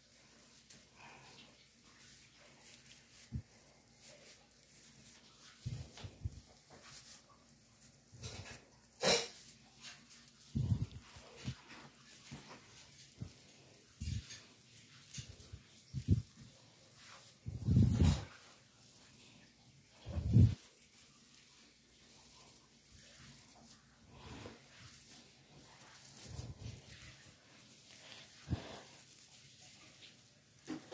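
Plastic needles of an artificial Christmas tree rustling and crackling as branches are bent and fluffed by hand, with scattered handling clicks. A few louder short sounds stand out, the loudest about 18 and 20 seconds in.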